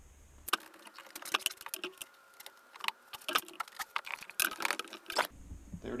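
A quick run of clicks, rattles and knocks of metal and wood, from the ratchet straps' buckles and the wooden board being taken off the stone steps. It starts about half a second in and stops suddenly about five seconds in.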